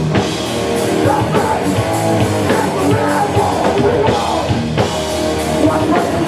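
Hardcore punk band playing live: distorted electric guitars, bass and drum kit at full volume, with the singer shouting the vocals into the microphone.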